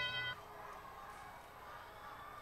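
The end of the field's teleop-start ding, a steady electronic chime of several tones held together, cuts off about a third of a second in and leaves faint, even gymnasium background noise.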